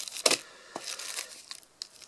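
Cardboard firework packets and plastic wrapping rustling and crinkling as they are handled and lifted inside a cardboard box, in a series of short bursts, loudest near the start.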